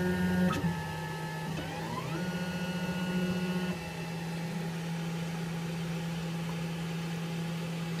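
DaVinci 1.0 3D printer's stepper motors whining as the print head moves through its extruder-cleaning routine. The pitch steps between several steady tones, with a rising whine about two seconds in. From about four seconds in it settles to a steadier hum.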